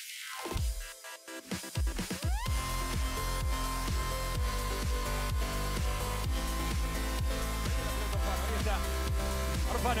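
Electronic dance music with heavy bass. The sound drops away in the first second or two, a rising sweep leads back in, and then a steady beat of about two hits a second carries on.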